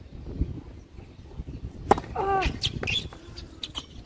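Tennis ball struck by rackets during a rally: a sharp crack about two seconds in and another right at the end, each followed by a short falling tonal sound, with lighter taps between them.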